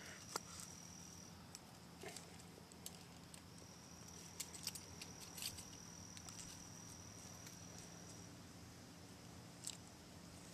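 Very quiet: a handful of faint, scattered metallic clicks and ticks from a bow saw blade and its end rings being handled against a green birch bow as it is bent and strung. A thin high insect trill comes and goes behind them.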